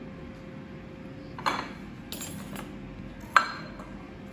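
Kitchen prep sounds: a few scattered knocks and clinks as a glass pie dish is set on the counter and a knife starts on red cabbage on a wooden cutting board, with one sharp knock, the loudest, a little before the end. A faint steady hum lies underneath.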